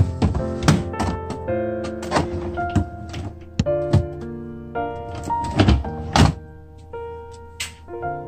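Repeated thunks and knocks of plastic freezer drawers and bins being pulled out and pushed back in a side-by-side refrigerator, over background piano music.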